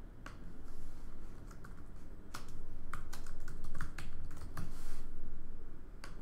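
Typing on a computer keyboard: a quick, irregular run of keystrokes, sparse at first and coming thick and fast from about two seconds in until near the end, as a short name is keyed into a form field.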